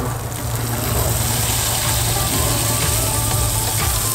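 Lobster tails sizzling on a hot portable grill as garlic butter is brushed onto them: a steady hiss with faint crackles, over a steady low hum.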